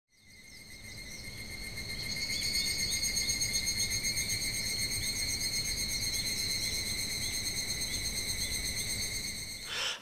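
Insects trilling in a steady, high chorus with faint repeated chirps, fading in over the first two seconds and stopping abruptly just before the end.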